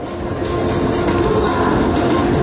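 A live praise band comes in loud, swelling up within the first half second, with held notes over a dense, roaring wash of sound.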